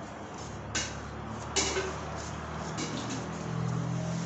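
Two sharp knocks, the second a little under a second after the first: a plastic plate tapped against a steel mixing bowl to knock off chopped greens and rose petals. A steady low hum runs underneath.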